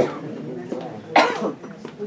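A person coughs once, sharply, a little over a second in, over faint voices in the room.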